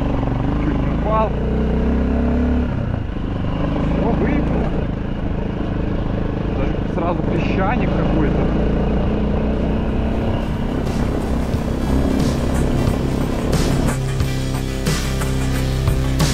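Minsk X250 dirt bike engine running steadily as the bike rides along a grassy field track. Music comes in over the last few seconds and gets louder.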